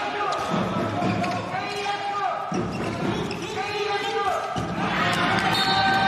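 A handball bouncing on an indoor court during play, with players' voices calling out over it.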